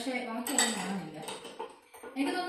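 Glass tumblers clinking against each other as they are handled and set down among a table full of glassware, with a sharp clink about half a second in and a smaller one a little later.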